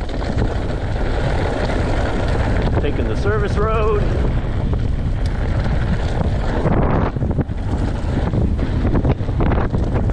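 Wind buffeting the helmet-camera microphone over the steady rumble and rattle of an alloy Santa Cruz Bronson V3 mountain bike rolling fast down a loose gravel road. A brief wavering tone sounds about three seconds in.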